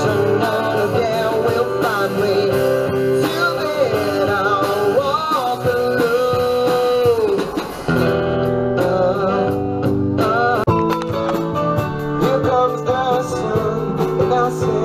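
Live band playing a song: a voice singing over guitars and drums, with a long held sung note that ends about halfway through, then a short break before the song goes on.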